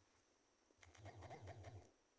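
Faint bird calls, about a second long and starting about a second in, over near silence.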